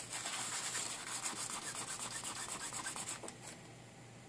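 A tissue wet with isopropyl alcohol scrubbed quickly back and forth over a circuit board, cleaning the pads after desoldering; the rapid, even rubbing stops about three seconds in.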